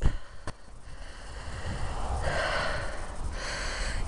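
A walker's breath close to the camera microphone, with one long hissing exhale in the second half, over a low rumble of wind and handling on the mic. There is a single sharp click about half a second in.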